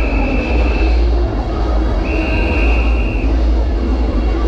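Long, steady high-pitched whistle blasts at a street carnival. One blast ends about a second in and another lasts over a second from about two seconds in. A continuous deep sound-system bass runs underneath.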